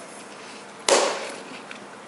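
A single short cough, sudden and loud, about a second in, fading over half a second, from a mouth coated with dry ground cinnamon.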